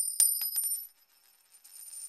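High-pitched metallic clinks and ringing: a quick run of four or five clinks that ring on and fade out within a second, then a second shimmering ring that builds up near the end.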